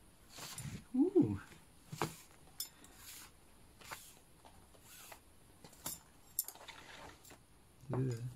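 A short hummed vocal sound about a second in, rising then falling in pitch. It is followed by several light, separate clicks and clinks of brass pipes and string being handled.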